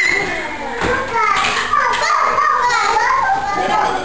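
Young children playing, several small voices calling out and chattering over one another.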